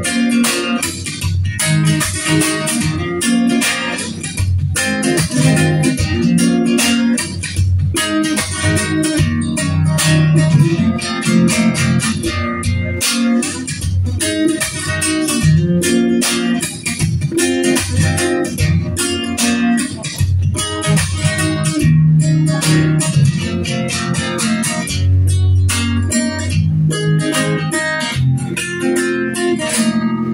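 Solo instrumental on an amplified cutaway acoustic guitar, plucked with a busy, even rhythm over strong bass notes.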